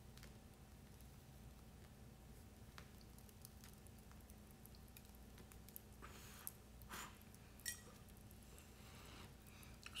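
Near silence: room tone with a faint steady hum and a few faint short puffs and clicks in the second half, as cigars are drawn on while being lit with a cedar spill and a match.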